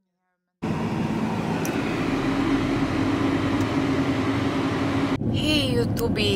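Steady engine and road noise inside a moving car's cabin, with a low steady hum, starting abruptly under a second in after silence.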